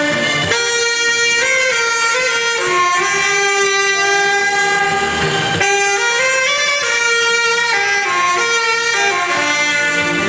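Several saxophones playing a slow melody together in long held notes that step to a new pitch every second or so.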